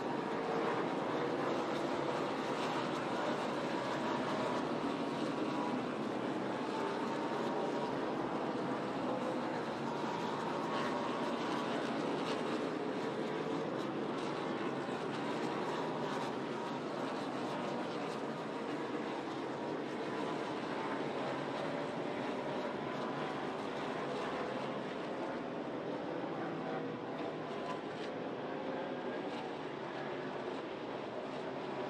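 A field of NASCAR Cup Series stock cars' V8 engines running at racing speed, several engine notes overlapping and rising and falling as the cars go by.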